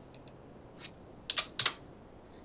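Computer keyboard keystrokes: about five scattered key presses, the last two louder and close together, as text is corrected in a formula.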